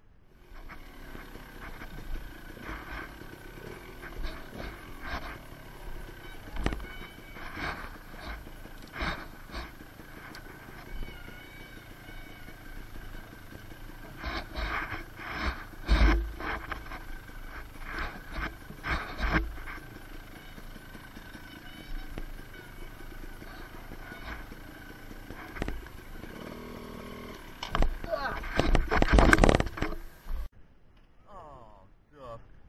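Handling noise on a helmet camera as a rider works a dropped dirt bike lying on its side among leaves and logs: rustling, scrapes and many sharp knocks and thumps, the loudest about halfway through and a dense run of them near the end.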